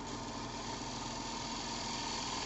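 Wood lathe running steadily with a bowl spinning on it: an even motor hum with a faint high tone over it.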